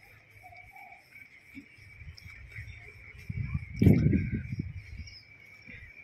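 Steady high-pitched insect chirring in the background, with low rumbling noise and a thump about four seconds in.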